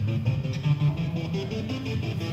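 Recorded electric guitar playing a fast, stuttering line, the notes chopped on and off rapidly by flicking the guitar's pickup toggle switch.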